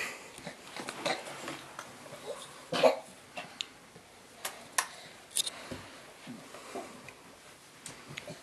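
A baby crawling up carpeted stairs: scattered soft taps and small short vocal sounds, with one louder cough-like sound about three seconds in.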